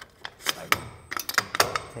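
Metal support bars being lifted off a tablesaw's steel sliding-table frame, clanking and clinking against it in a quick, uneven string of sharp knocks.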